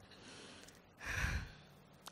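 A woman's breathing close to a microphone in a pause between spoken lines: a faint breath near the start, then a stronger breath about a second in, lasting about half a second.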